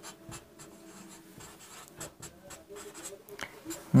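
Marker pen writing on a whiteboard: a run of faint, irregular short strokes as numbers and an equation are written out.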